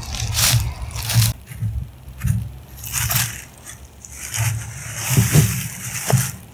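Rustling and scraping of wool clothing and dry leaf litter close to the microphone, in a string of uneven bursts with low handling thumps, as someone moves about and sits down.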